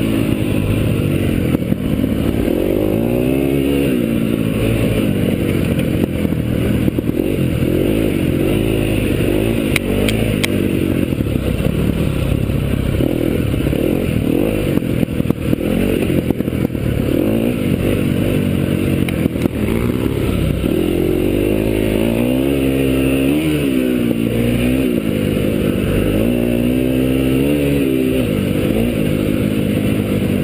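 KTM enduro motorcycle engine being ridden hard on a rough dirt track, its pitch rising and falling again and again with throttle and gear changes, with occasional clatter from the bike over bumps.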